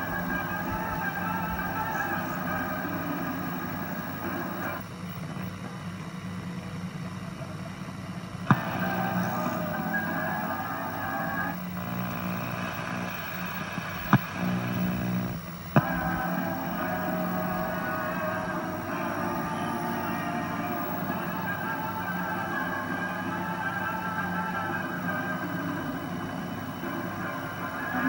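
Audio played back from an old open-reel videotape on a National NV-3082 portable video recorder: music-like sound over a steady hum. Its texture changes abruptly several times, with three sharp clicks about a third and halfway through, where the tape was stopped and recorded over again.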